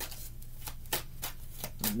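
A tarot deck being shuffled by hand: a run of soft, irregular card clicks and slaps as the cards are worked from hand to hand.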